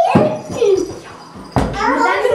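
Toddlers' voices: wordless, pitched calls that rise and fall, in two bursts with a short lull between, and a sudden knock about one and a half seconds in.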